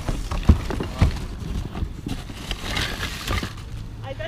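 Plastic toys and bagged items clattering and crinkling as a hand rummages through a cardboard box of toys. There are a few sharp knocks about half a second and a second in, then a longer crinkly rustle.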